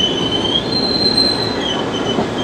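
R68A New York City subway train rolling past the platform: a steady rumble of wheels on rail with a string of high-pitched squeals that come and go and change pitch, the longest lasting under a second in the middle.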